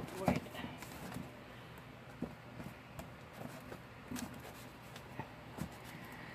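A handful of light, irregularly spaced knocks and taps as a white picture frame is handled and set upright on a newspaper-covered table.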